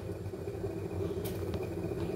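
Steady low mechanical hum, like a running appliance or motor, with two faint clicks near the middle.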